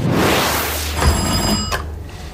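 A brief rushing noise, then an electric doorbell ringing for under a second and cutting off sharply.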